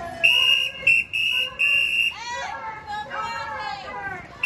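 A whistle blown in four short, shrill blasts over the first two seconds, followed by raised voices shouting in a crowd.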